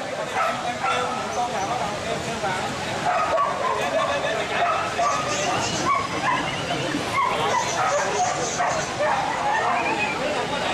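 Dogs barking amid the chatter of a crowd of people.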